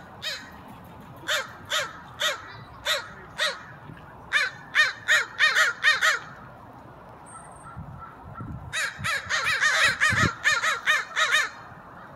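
American crows cawing in harsh single caws, one after another. After a pause of about two seconds a faster, denser run of caws follows, which the speaker calls anger calls, crows driving each other off.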